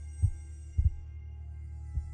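Heartbeat sound effect: short low thumps about once a second, one of them doubled, over a steady low drone with faint held high tones.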